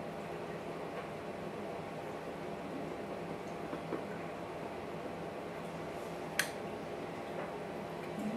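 Steady low room hum, with a couple of faint taps and one sharp click about six seconds in, as of a small object being handled.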